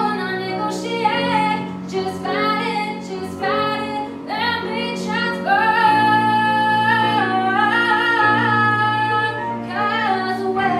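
A teenage girl singing solo into a handheld microphone, belting. From about six seconds in she holds one long note with a slight vibrato.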